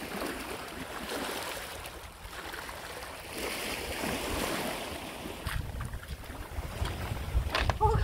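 Small waves washing and lapping over a pebble shore, with wind rumbling on the microphone from about halfway through. A voice starts right at the end.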